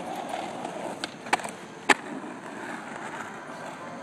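Skateboard wheels rolling steadily over asphalt, with two sharp knocks from the board a little over a second in, about half a second apart.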